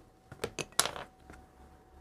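A few light clicks and taps, bunched in the first second then sparser, from tools and a clay slab being handled on a pottery worktable.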